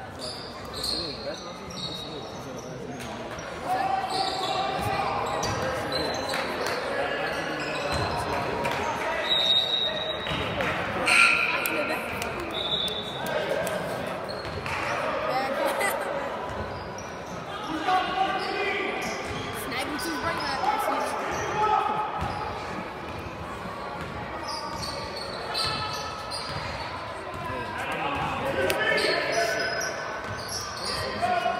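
Indoor basketball game: a basketball bouncing on the hardwood court amid continual voices of players and spectators calling out and chattering, echoing in a large gym.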